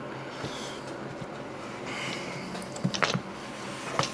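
Steady low hum of a NewAir AW-280E thermoelectric wine cooler's fan running, with a couple of light clicks from handling about three seconds in.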